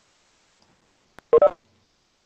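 A single click about a second in, then a brief pitched blip lasting about a quarter second, over otherwise near-silent call audio.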